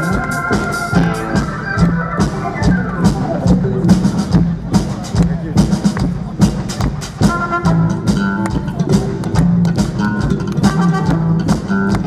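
Live band playing an instrumental passage: a drum kit keeping a steady beat under bass and electric guitar. A long falling slide in pitch comes a few seconds in.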